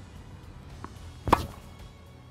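A single crisp hit, as of a tennis racket striking a ball, about a second in, with a faint tick just before it.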